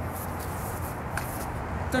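Low, steady outdoor background hum with a few faint rustles and light clicks, as a training sword and its scabbard are moved by hand after a slash.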